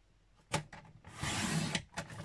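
Paper trimmer cutting thick cardstock: a single click, then the blade carriage swishing along its rail through the card in one stroke of about half a second.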